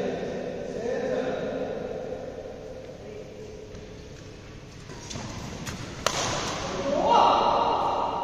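Badminton rackets striking a shuttlecock during a doubles rally: two or three sharp hits about five to six seconds in. A player's loud shout follows near the end, with other players' voices early on.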